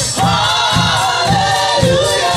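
Gospel praise team of women singing together with live band accompaniment, held notes over a bass beat that pulses about twice a second.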